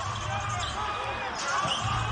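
Basketball game sound in an arena: a ball being dribbled on the hardwood court over a steady murmur of crowd and faint voices.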